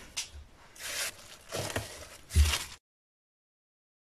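Plastic cling film rustling and crinkling as it is handled and opened out on a cutting board, with a couple of soft knocks on the board. The sound cuts off abruptly to silence near the end.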